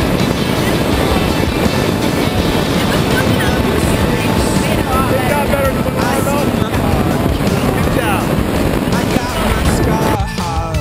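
Wind rushing over the camera microphone during a tandem parachute canopy descent, a steady low rumble, with indistinct voices faintly under it.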